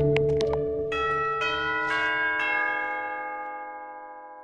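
Cartoon doorbell chime on bells: notes struck one after another in the first two and a half seconds or so, ringing on together as a chord that slowly fades.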